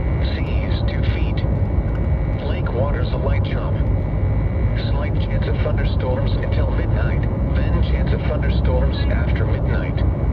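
Synthesized voice of a NOAA Weather Radio broadcast reading the forecast, heard through a radio speaker over a steady low hum.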